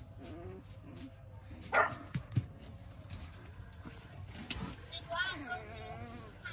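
Week-and-a-half-old puppies whimpering and squealing: a short yelp about two seconds in, then wavering, rising-and-falling squeals near the end.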